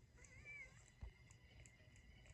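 Near silence, with one faint wavering cat-like mew early on, from a cartoon playing through a laptop's speaker.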